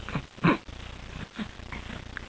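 A three-month-old baby making a few short coos and grunts. The loudest is about half a second in, with a smaller one a second later.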